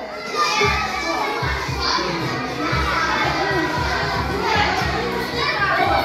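A group of young children talking and calling out over one another in a large room, with background music and a steady beat underneath.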